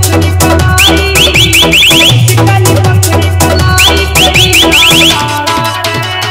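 Indian DJ remix with a heavy bass and dense electronic percussion. Twice a run of about seven quick rising whistle chirps (the 'sitti' effect) sounds, about a second in and again about four seconds in. The bass thins out near the end.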